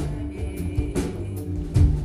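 Live band music: electric guitar and electronics over held low tones and bass notes, with drum kit hits about a second in and near the end.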